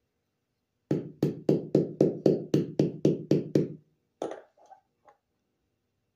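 A hammer striking a 15/16-inch socket used as a driver, tapping a new ball bearing into a lawn mower wheel hub: about eleven quick metal-on-metal blows at roughly four a second, then one more single blow.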